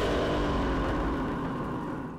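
A car engine revs up sharply, its pitch climbing, then holds at high revs and slowly dies away.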